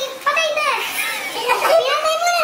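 A young woman talking in Tagalog in a high-pitched, excited voice.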